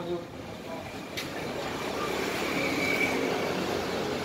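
Steady noise of a passing road vehicle, swelling gently over a few seconds, with a single sharp click about a second in.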